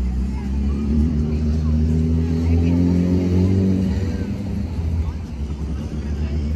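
A motor vehicle's engine running nearby, its pitch rising a little and peaking in the middle before easing off, over a low rumble.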